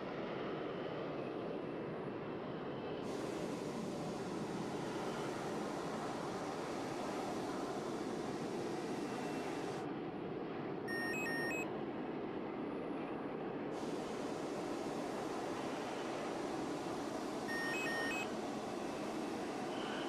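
Harrier GR7's Rolls-Royce Pegasus jet engine running steadily in the hover, heard as a constant rushing noise through the cockpit microphone. Short electronic beeps come about 11 seconds in and again near the end.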